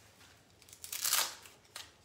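A rasping scrape of nylon webbing as a heavy-duty tactical dog collar is pulled tight and fastened, followed by a short click near the end.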